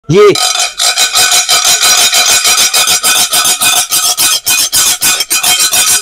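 Metal spoon scraped hard back and forth across a gold-rimmed white ceramic plate, fast even strokes about seven a second with a faint ringing from the plate: a scratch test of the glaze and gold rim.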